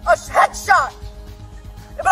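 A woman shouting a few agitated words in the first second, then a quieter stretch of background music with steady held tones.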